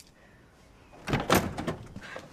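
A door being worked open and shut: a quick run of knocks and clunks starting about a second in, the loudest just after.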